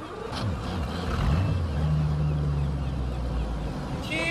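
A fishing boat's engine revving up, its deep note rising, then settling into steady low running.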